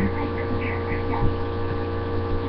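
Steady electrical mains hum in a webcam microphone's recording, a low, even tone with many evenly spaced overtones.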